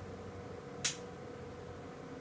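One short, sharp click as a small plastic toy figure is handled between the fingers, over a faint steady hum.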